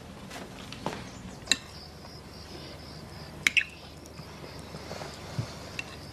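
Quiet room tone with a few light, sharp clicks and knocks, the loudest a quick pair about three and a half seconds in, over a faint steady high hiss.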